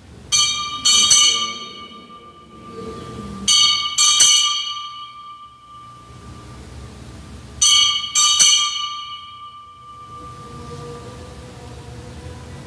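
Altar bells rung in three bursts about four seconds apart, each a quick double shake whose bright, many-toned ringing dies away, marking the elevation of the consecrated host at Mass.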